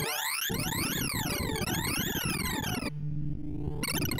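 Sorting-visualizer tones from ArrayVisualizer: a rapid stream of synthesized beeps whose pitch follows the values being read and written as an in-place merge sort works through 4,096 numbers. The beeps sweep up and down in repeated zigzag glides, about one rise and fall a second. Near the end they thin for most of a second to a lower, steadier tone.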